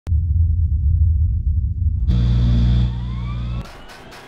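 A race car engine running, heard muffled and low for the first two seconds, then opening up clear with a rising whine. It drops away about three and a half seconds in.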